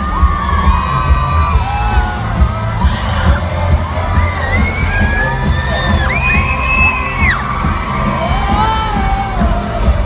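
Loud live pop concert heard from inside the crowd: bass-heavy music with many fans singing and shouting over it, and a long high scream about six seconds in.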